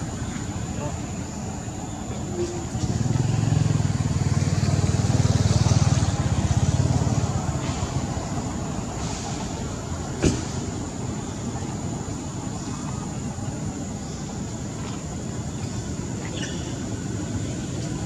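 Outdoor background noise with a low engine rumble that swells about three seconds in and fades by about seven and a half seconds, like a motor vehicle passing. A single sharp click comes near ten seconds, over a steady faint high whine.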